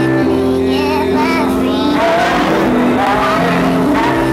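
Electronic music played live: held keyboard chords that shift every second or so, with a wavering, vibrato-laden melody line above them.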